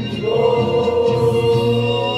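Voices singing in chorus, holding one long note.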